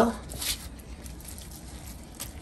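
Gloved hands rubbing oil into raw chicken breasts: soft, wet squishing and rubbing, a little louder about half a second in.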